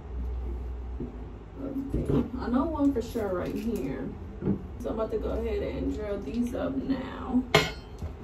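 A voice talking indistinctly in the background, with a sharp click or knock near the end.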